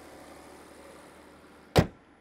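Bonnet of a 2022 Nissan X-Trail being shut: a single loud slam near the end, after a few seconds of faint steady background.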